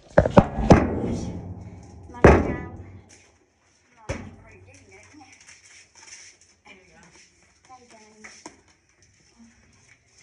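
Knocks, thumps and rubbing of a phone being handled and covered, right on its microphone, loudest in the first three seconds. Faint voices and small sounds follow.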